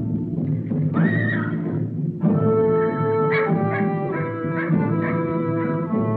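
Orchestral film score, with a horse whinnying about a second in as a single rising-and-falling cry; from about two seconds on the orchestra holds sustained chords.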